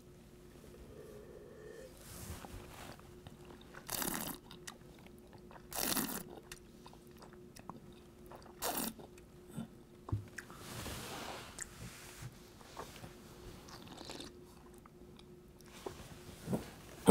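A person tasting red wine, drawing air through the wine in the mouth to aerate it: three short, sharp slurps about two seconds apart, then a longer, softer breath, with small wet mouth clicks between them.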